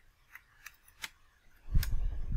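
Computer keyboard keystrokes, about five separate clicks as a word is typed. A low rumble comes in near the end.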